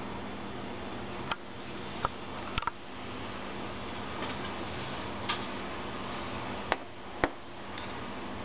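Steady low hum and hiss of room tone and camera noise, broken by about six short sharp clicks, typical of a handheld camera being handled and adjusted.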